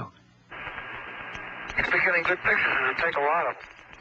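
Crew radio transmission from the Apollo 9 mission. Radio hiss opens about half a second in, and a man's voice comes through it, thin and narrow like a radio, for about two seconds before it cuts off near the end.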